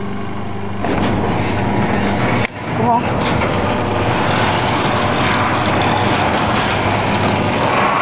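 Electric garage door opener running as the door rolls up: a steady mechanical rumble and rattle that starts about a second in and keeps going.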